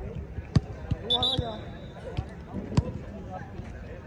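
Footballs being kicked on a grass pitch: sharp thuds, the two loudest shortly after the start and again about two seconds later, with a few softer touches between them.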